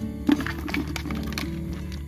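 Background music, with a few sharp clicks and knocks in the first second and a half, the loudest near the start: large land snail shells knocking against each other and the plastic bucket as a hand sets a snail among them.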